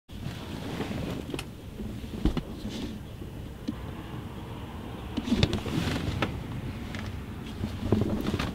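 Low steady vehicle rumble heard from inside a truck cabin, with a few scattered clicks and knocks.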